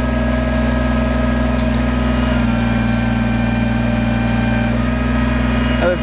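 Kubota BX sub-compact tractor's three-cylinder diesel engine running steadily while the hydraulic backhoe pulls the tractor backward out of deep mud, with a constant hum and thin steady whining tones over it.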